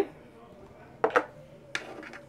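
Metal dice tossed onto a tabletop: a quick double knock about a second in, then a single knock shortly after.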